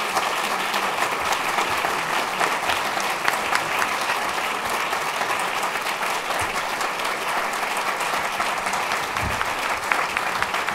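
A large audience applauding steadily: many hands clapping at once, sustained and even.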